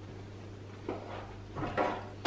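A metal spoon scraping and knocking in a ceramic bowl: a small click about a second in and a short louder scrape near the end, over a low steady hum.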